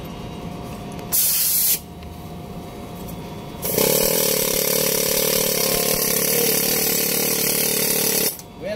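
Pneumatic jet chisel (needle scaler) test-run freely in the air after reassembly to check that it works: a short half-second burst about a second in, then from about four seconds in a steady run with a hiss of exhaust air.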